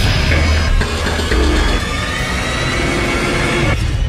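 Film trailer soundtrack: dramatic music mixed with sound effects, with a steady low rumble underneath; the upper range cuts off sharply just before the end, leaving mostly the low end.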